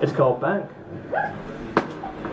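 Speech from the stage in a small room, with one sharp click near the end.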